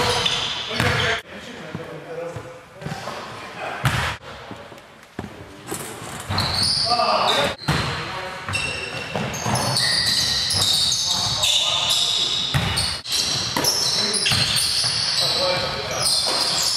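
Basketball game in a gym: sneakers squeak in short, high-pitched bursts on the hardwood floor, the ball bounces with sharp knocks, and players' voices echo in the big hall.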